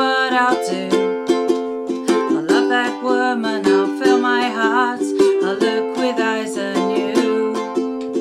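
Ukulele strummed in a steady rhythm of chords, with a woman's voice singing along without clear words.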